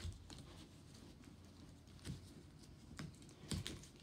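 Faint rustling and scattered light clicks of a small cardboard headphone box being pulled open and handled, with a few sharper ticks near the middle and towards the end.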